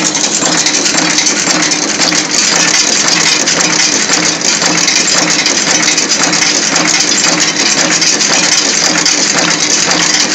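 Four-die, four-blow cold heading machine running at production speed: a dense, steady metallic clatter from the heading strokes and transfer mechanism over a constant low hum.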